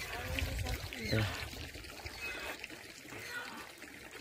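A short spoken exclamation, 'ayu', about a second in, over a faint steady rushing noise.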